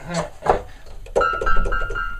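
A Logic software piano played from a MIDI keyboard: one high note struck a few times in quick succession, starting about a second in.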